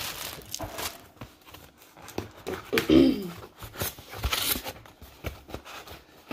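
A cardboard product box and its packaging being handled and opened: scattered knocks, scrapes and short rustling or tearing sounds.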